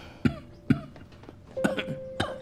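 An elderly man coughing: two single coughs, then a quick run of coughs near the end.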